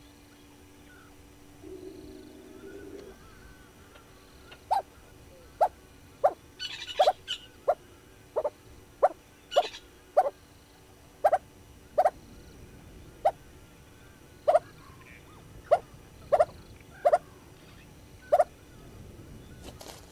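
A bird calling over and over: nearly twenty short, loud notes at irregular intervals of about half a second to a second, starting about five seconds in, with some higher twittering mixed in around the middle.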